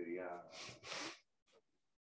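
A person's short, quiet voiced sound, like a hesitant 'mm', followed by two quick breathy puffs of air.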